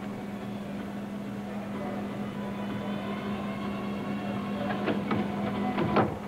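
Arena ambience under a steady low electrical hum. Near the end come a few sharp thuds as the gymnast's hands and feet strike the balance beam during a flip.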